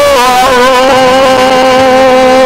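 A man's voice holding one long sung note with a slight vibrato.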